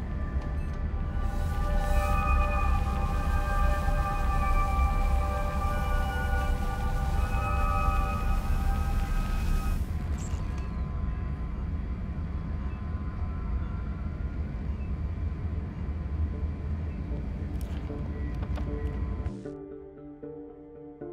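Eerie, music-like sound from the space station's instrument panels: several long held notes together over a low rumbling drone. The notes stop about halfway through, leaving the drone, which cuts off just before the end.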